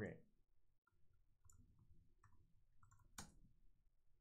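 Faint computer keyboard typing: a few soft key clicks, then one sharper keystroke about three seconds in.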